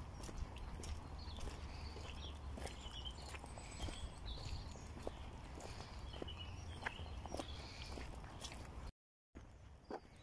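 Footsteps on a gravel path, irregular light steps, over a steady low rumble of wind on the microphone. The sound drops out for a moment near the end.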